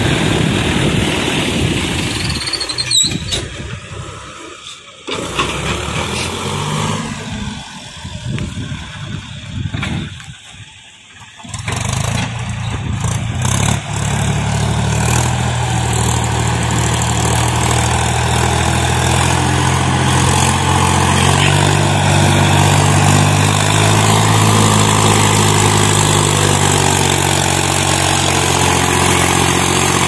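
A tractor's diesel engine running, faint and broken in the first half with two short dropouts. From about halfway it becomes a steady, close engine sound whose pitch rises and falls slightly as the tractor works in deep mud.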